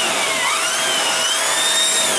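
Shark vacuum cleaner running with a small brush attachment pushed over an upholstered sofa cushion; the motor's whine rises and falls as the brush moves.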